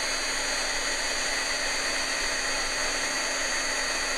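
Handheld craft heat gun blowing steadily with a faint steady whine, re-heating the coating on a chipboard brooch to liquefy it again for stamping.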